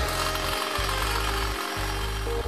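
Glass being ground on a wet grinding wheel: a steady, gritty grinding hiss as the piece is held against the spinning wheel, starting abruptly just before and running on evenly, with music underneath.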